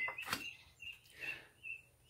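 A light tap near the start as a card is set down, then three short, faint, high chirps about half a second apart from a small bird.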